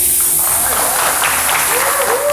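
Compressed air hissing steadily as it is released from the high-pressure reservoir to drive a small wind-turbine assembly. Clapping and voices come from the onlookers.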